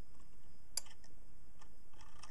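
A single sharp metallic click about a third of the way in, with a couple of fainter ticks around it: the steel toggle of a Hipp pendulum clock movement snapping over the brass dog as the pendulum swings past.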